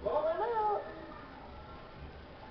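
A short wordless vocal call lasting under a second near the start, high in pitch, rising and then falling.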